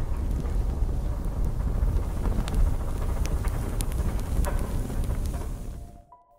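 A steady deep rumbling drone with scattered faint clicks over it, fading out near the end.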